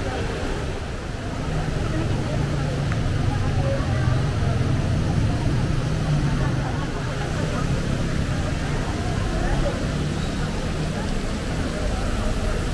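Busy city-street ambience: scattered voices of passers-by over a steady low rumble of traffic.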